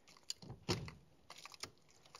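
Column-mounted gear shift lever being moved into reverse, giving a few soft clicks and knocks, the strongest a little under a second in, followed by a few lighter ticks.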